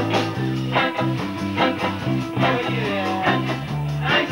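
Live band playing an instrumental passage: a bass line and guitar over a steady beat of about two to three strokes a second, from an old VHS recording.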